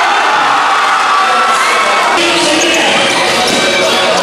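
Live indoor basketball game sound: a basketball bouncing on the court amid the chatter and shouts of a crowd of spectators.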